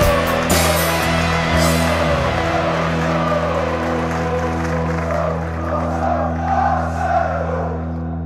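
The closing bars of a rock song. Drum strikes run through the first couple of seconds, then the band's final chord is held, ringing with a heavy bass and slowly dying away.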